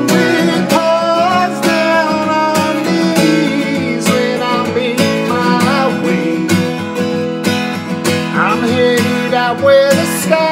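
Acoustic guitar strummed steadily, with a man's singing voice carrying a wavering melody over it.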